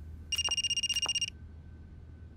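Mobile phone ringing: a high, fast-trilling ring that lasts about a second and then stops.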